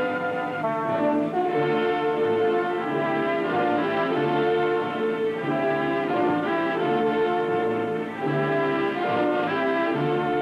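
Orchestral film music with brass carrying a melody in held notes that change in steps.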